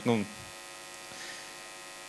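Steady electrical mains hum with a faint buzz from the talk's microphone and sound system, filling a pause in speech after a man's brief filler word at the start.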